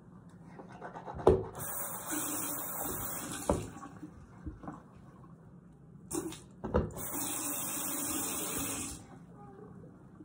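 Bathroom sink tap running twice, about two seconds each time, with water splashing into the basin; a sharp knock comes as each run starts.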